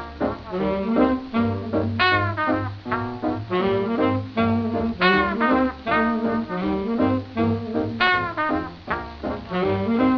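Instrumental passage of a small-band swing (jump) record: horns riff over a bass line, with a bright phrase coming back about every three seconds.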